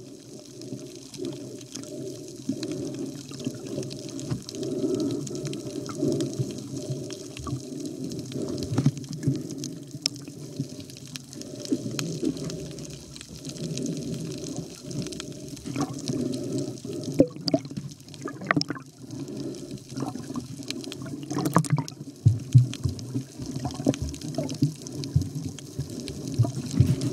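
Muffled water sloshing and gurgling, with a few sharp clicks scattered through it, more of them in the last third.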